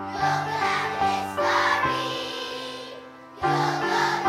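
Children's choir singing. The sound thins out for a moment and comes back in strongly about three and a half seconds in.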